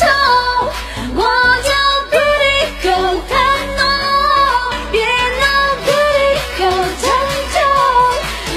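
A pop-style song: a singing voice with held and sliding notes over backing music with a steady bass line.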